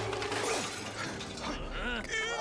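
A noisy crashing, shattering sound effect in an animated film's soundtrack, with a few held notes underneath.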